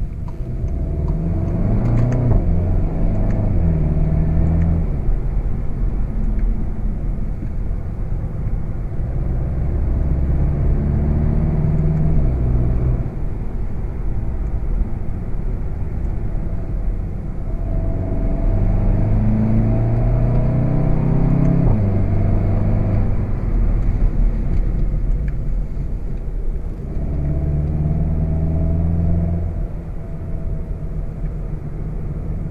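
2016 VW Golf GTI Performance's 2.0-litre turbocharged four-cylinder engine pulling hard in four bursts of acceleration. Its note climbs and steps through gear changes of the DSG gearbox, then falls back each time the car eases off for a bend.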